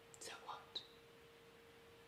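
Near silence under a faint steady hum. In the first second, a woman's short, soft breathy mouth sounds and a small click.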